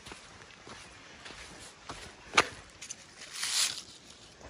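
Light handling noises over sandy ground, with a few small clicks and one sharp knock about halfway through. Near the end there is a brief rustle of leaves as a hand grabs a leafy seedling.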